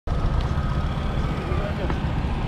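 Wind buffeting the microphone of a handlebar-mounted camera on a moving road bike, heard as a loud, uneven low rumble.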